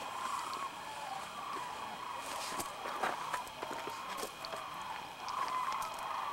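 A chorus of many sandhill cranes calling, the overlapping calls swelling near the end. A few sharp clicks and some rustling come in around the middle.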